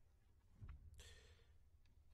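Near silence with a person's faint breath about a second in and a couple of small clicks.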